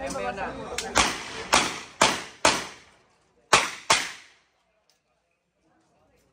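Handgun shots fired in rapid strings on a practical shooting stage: four shots about half a second apart, then a pause of about a second and two more in quick succession, each trailing off in a short echo.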